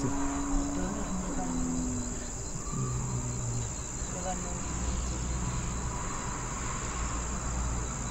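Crickets chirring in a steady, unbroken high drone. A low rumble sits underneath from about halfway through.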